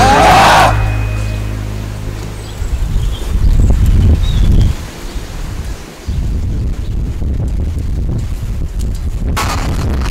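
The backing song ends on a final hit that dies away. Then there is outdoor camera sound, mostly a low rumble of wind on the microphone. Near the end a BMX bike rolls in fast on the path.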